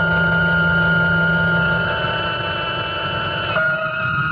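Dramatic radio-drama music sting at the end of the story: a sustained chord of several held tones over a low rumbling noise, shifting to a new chord about three and a half seconds in.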